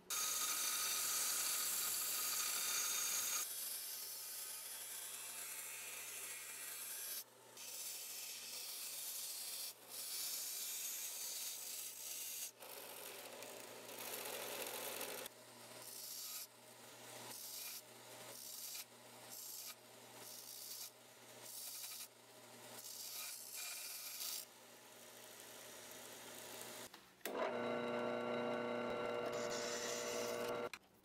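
Small belt grinder running with a steady hum while a steel knife blade, held in a clamp guide, is ground against the belt in repeated passes about a second long with short breaks, after a loud rasping stretch at the start. Near the end a drill press starts and drills into the steel tang with a steady tone.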